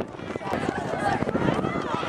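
Spectators' voices: several people talking and calling out at once over the general hubbub of an outdoor crowd.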